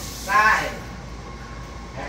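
A short spoken exclamation about half a second in, then low room noise.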